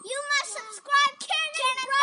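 Children's high-pitched voices in short, sing-song phrases without clear words.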